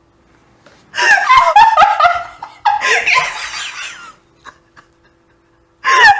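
A woman laughing hard in loud fits, the first starting about a second in, a second after a short break, and another beginning near the end.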